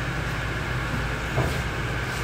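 Steady low mechanical hum, with one brief soft thump about one and a half seconds in.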